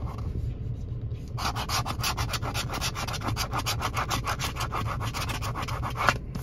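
A coin scratching the latex coating off a scratch-off lottery ticket. Rapid back-and-forth scraping strokes, about eight a second, begin about a second and a half in.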